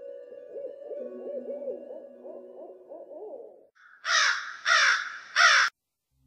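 Eerie intro music: a held drone with a quick run of wavering glides over it, then three loud, harsh caws about two-thirds of a second apart that cut off suddenly near the end.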